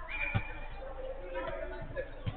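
Players' shouts and calls in an enclosed indoor five-a-side pitch, starting with a high drawn-out shout, over a few dull thumps.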